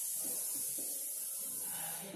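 Marker pen writing on a whiteboard, faint short rubbing strokes under a steady high-pitched hiss.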